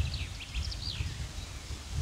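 Outdoor ambience: a few short, high bird chirps in the first second over a steady low rumble.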